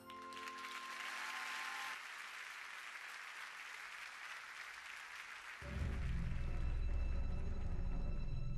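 Theatre audience applauding as a musical number ends, the applause slowly thinning. About two-thirds of the way through, the orchestra comes in loudly with low, sustained notes under it.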